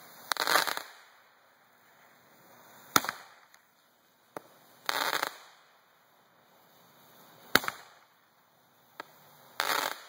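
Roman candle firing shot after shot: a sharp pop, then about two seconds later a longer half-second burst, repeating about every four and a half seconds, with a few smaller pops between.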